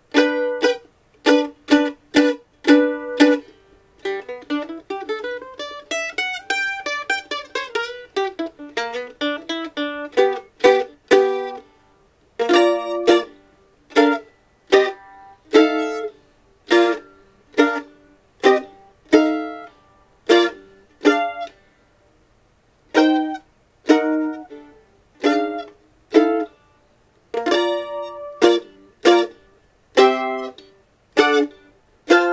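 Pomeroy two-point violin-style mandolin on old strings being played: a few strummed chords, then a run of notes that climbs and falls back. Then it gives way to short chopped chords, each stopped right after the stroke, about two a second with a brief pause in the middle.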